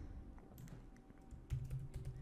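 Faint typing on a computer keyboard, a few keystrokes mostly in the second half.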